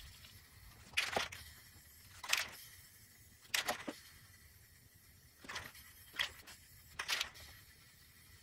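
Aerosol spray paint can spraying black paint onto a plywood board in short hissing bursts, about seven of them, roughly one a second.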